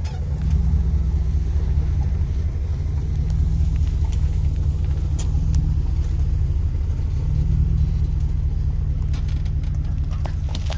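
Ford F-150 pickup's engine and exhaust running as the truck drives slowly off-road through brush: a loud, steady low rumble that swells slightly twice.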